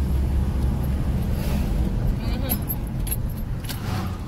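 Inside a moving Suzuki car: steady low rumble of the engine and tyres on the road, with a few light clicks or rattles in the second half.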